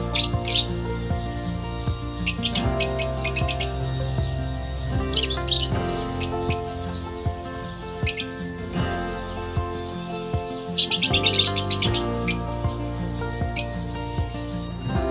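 Lovebirds chirping in several short bursts of rapid, shrill chatter, the longest about eleven seconds in, over background music.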